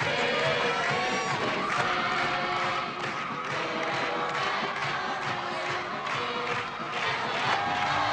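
Crowd cheering in a packed gymnasium over music with a regular beat.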